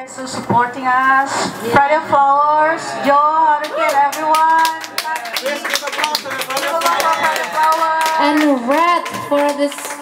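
Audience applause in a small club, with a woman's voice over a microphone drawn out in long, gliding phrases above the clapping.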